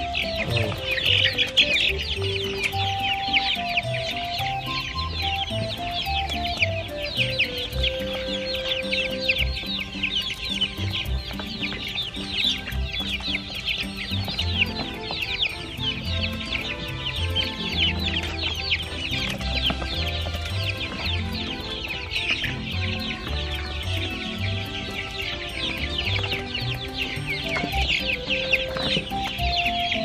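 A flock of laying hens clucking busily and continuously while feeding, with background music carrying a slow stepping melody underneath.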